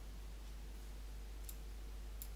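A single faint computer mouse click about one and a half seconds in, over a steady low hum and faint room hiss.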